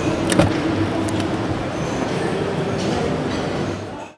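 Front cab door of a Volkswagen Transporter T5 being opened: the latch clicks sharply as the handle is pulled, about a third of a second in, with a second click about a second in. Steady hall background noise with distant voices runs under it and fades near the end.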